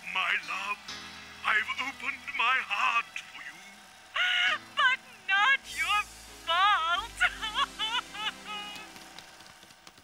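Background music with high, wobbling voice-like sounds in short bursts that form no clear words.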